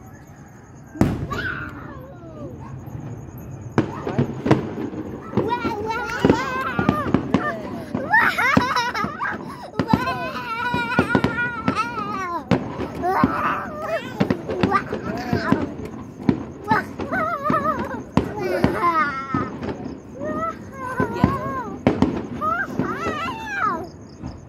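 Aerial fireworks bursting: a string of sharp bangs and pops, the first strong one about a second in and more going on throughout. High-pitched voices call out over them from about five seconds in.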